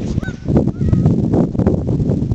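Wind buffeting the microphone with a loud, uneven rumble, and over it a few short, high, wavering calls near the start and again about a second in.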